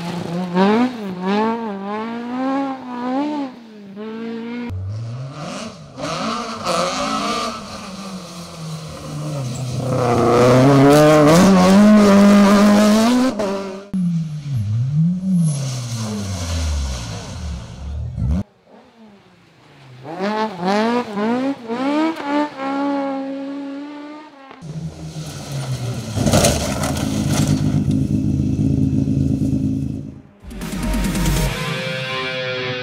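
Rally cars on tarmac stages, engines revving hard and changing gear as they pass, in a run of short clips cut together; the first is a Mk2 Ford Escort. The pitch climbs and drops again and again, with a brief lull shortly after the middle.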